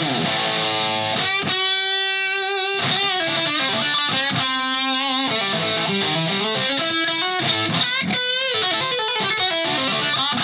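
Electric guitar with humbucker pickups played through channel B of an Orange Thunderverb 50 valve head, run into an attenuator. Two notes are held and left to ring, about a second and a half in and again about four seconds in, between faster picked phrases.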